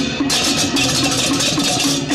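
Balinese gamelan beleganjur ensemble playing: dense, interlocking clashes of handheld cengceng cymbals ring almost without a break over a quick repeating figure of pitched gong notes, with drums.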